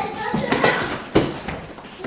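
Sparring on gym mats: a few sharp slaps and thuds from gloves and feet, the loudest about a second in, with a short stretch of a man's voice near the start.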